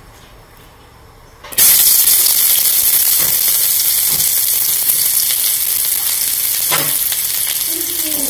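Sliced shallots dropped into hot oil in an aluminium wok about a second and a half in: a sudden loud sizzle that then carries on steadily, with a few light knocks.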